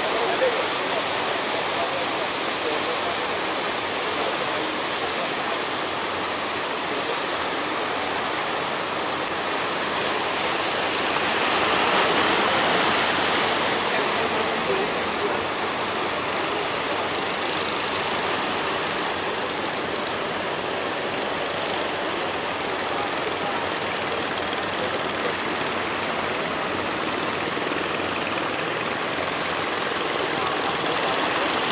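Surf and rushing water, with the engine of a wooden fishing boat running as it passes close through the channel. The noise grows louder for a few seconds around the middle.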